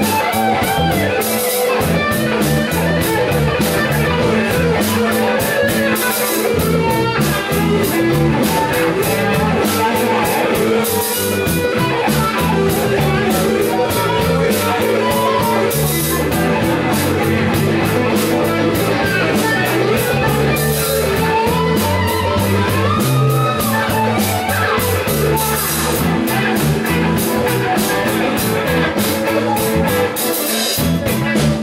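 Live rock band playing: electric guitar lines over a drum kit with evenly repeating cymbal strikes, and keyboard, with little or no singing.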